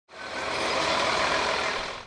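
City bus engine running as the bus pulls slowly past, a steady engine and road sound that dies away near the end.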